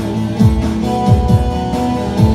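Instrumental Turkish folk music: a bağlama (saz) played over held notes and an electronic beat of deep drum hits that fall in pitch, landing in quick pairs.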